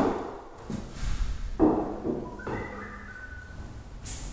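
A sharp click, then a thud about a second and a half in, followed by a short squeaky creak: someone moving through an empty room with bare wood floors.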